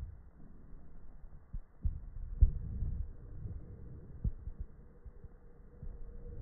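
Dull low knocks and rumbling handling noise as a ring magnet is worked down over wooden skewers onto a stack of magnets. The thuds come irregularly, the strongest about two and a half seconds in and again past four seconds.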